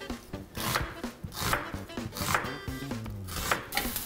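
Chef's knife chopping an onion on an end-grain wooden cutting board: a steady series of crisp cuts, roughly one every three quarters of a second.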